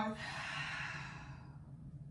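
A woman sighing out a long breath through her mouth, a breathy hiss that fades away over about a second and a half.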